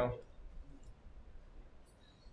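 A man's voice finishing a word right at the start, then quiet small-room tone with a few faint clicks.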